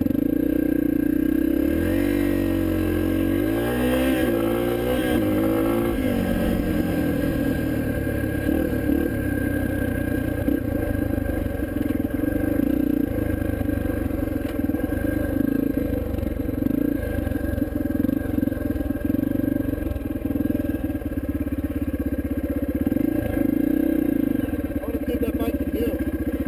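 Yamaha TTR230 dirt bike's four-stroke single engine heard from onboard, revving up through the gears as it pulls away, its pitch climbing and dropping with each shift over the first few seconds, then running steadily at high revs.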